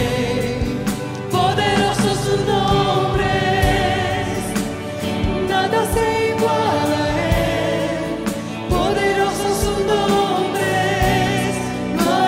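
A Spanish-language worship song: a woman's lead voice and a congregation singing together, with instrumental accompaniment keeping a steady beat.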